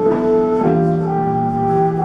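Small jazz combo playing an instrumental passage of a slow ballad, held chords shifting every second or so, with muted trumpet over the band.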